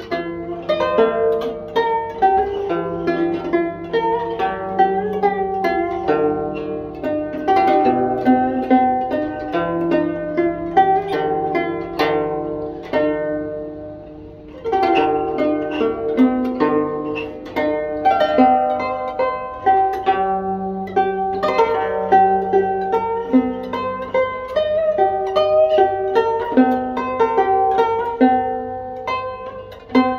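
Solo guzheng playing a traditional Chinese piece: a steady stream of plucked notes over held low notes. The playing thins and quietens about thirteen seconds in, then comes back louder about fifteen seconds in.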